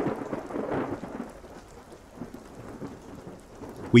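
Steady rain with a roll of thunder that swells right at the start and fades away over the next couple of seconds, leaving the rain.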